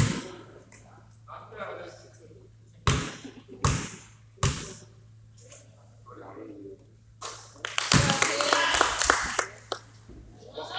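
A basketball thudding in a gym: one sharp hit at the start, then three bounces on the hardwood floor a little under a second apart, and another thud about eight seconds in followed by a burst of voices.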